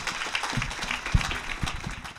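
Audience applauding, many hands clapping in a dense patter, with a few low thumps, the loudest just over a second in.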